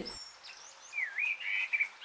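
Birdsong: a few thin high chirps, then a warbling, wavering call about a second in.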